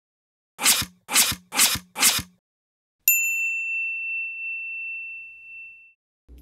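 Intro sound effect: four short percussive hits about half a second apart, then a single bright chime that rings out and fades over about three seconds.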